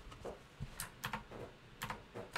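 Faint, sharp taps of computer keys being pressed, about five spread irregularly, two close together near the end.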